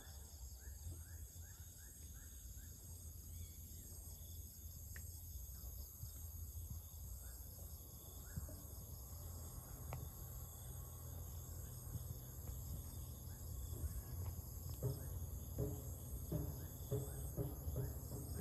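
Steady high-pitched chorus of crickets and other insects, with a low rumble underneath. A few short chirps come through, and a run of louder short calls in the last few seconds.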